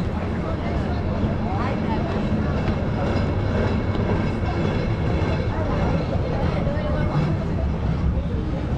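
Busy city-square ambience: passersby talking over a steady low rumble of traffic.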